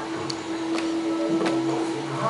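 A steady hum on one unchanging pitch, with a few faint ticks over it.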